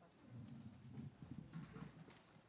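Near silence: room tone with faint, scattered low knocks and murmurs.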